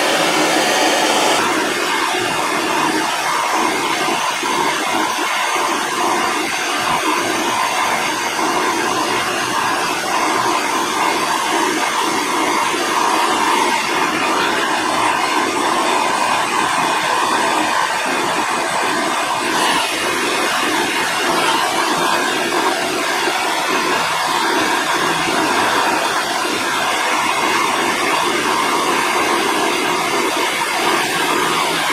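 Handheld gas torch burning with a steady hiss, its flame heating a steel knife blade to red heat so that silver solder will stick to it.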